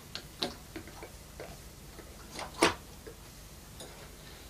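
A string of short clicks and light knocks at uneven intervals, the loudest about two and a half seconds in.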